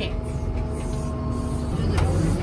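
Tractor engine running steadily, heard from inside the cab, a low rumble with a steady hum over it; near the end the hum fades and the rumble grows louder.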